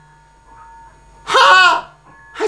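A single short voiced cry from a person about a second and a half in, rising then falling in pitch, after a quiet start.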